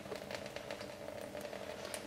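Faint, steady splashing of tap water into a sink as a paintbrush is rinsed under it.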